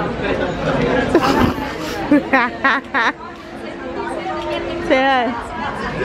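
Several people talking over one another at a dinner table, with three short high-pitched vocal sounds about two to three seconds in.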